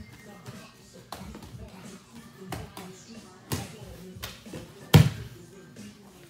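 Sparring impacts on a padded mat: a few sharp thumps of gloved strikes and bare feet over the first four seconds, then one much louder thump about five seconds in as a body lands on the mat from a takedown.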